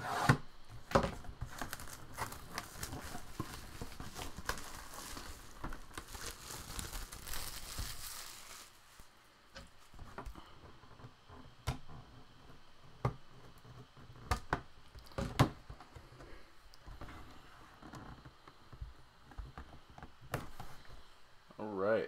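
Plastic shrink wrap on a cardboard box being cut and torn away, a dense crinkling for the first eight seconds or so. After that come scattered sharp clicks and taps as the box's seal is cut and the box is handled.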